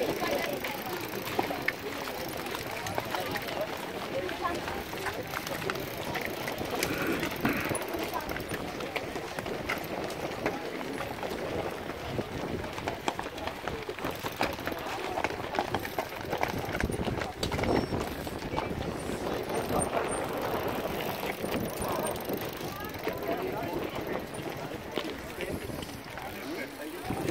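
Many young people's voices chattering at once in a walking group, with footsteps scuffing and crunching on a dirt and gravel path.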